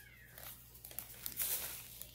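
Faint rustling of a paper gift bag and envelopes being handled, in a few short bursts.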